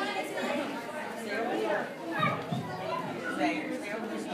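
Indistinct chatter of a crowd of visitors, with children's voices, several people talking over one another.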